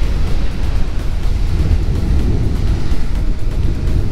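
Surf breaking on a beach, with a steady wind rumble buffeting the microphone.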